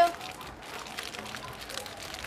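Quiet crinkling and crackling of a chip bag as hands fold it closed.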